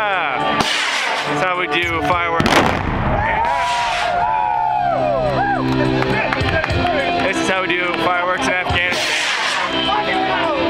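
Blast from a controlled detonation of unexploded ordnance, a sudden boom about two and a half seconds in, heard under music that plays throughout.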